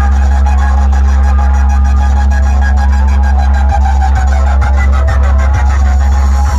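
Very loud sound-check playback from a large DJ loudspeaker stack: a sustained deep bass drone with a steady higher hum over it and a rapid, even ticking pulse.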